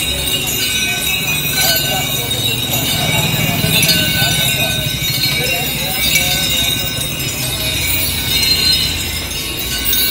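People talking along a road with metallic clinking and jingling from the chains and bells of captive elephants walking past.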